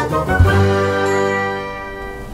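Short musical logo sting: a low hit about half a second in, with a bright ringing chime that holds and then fades away.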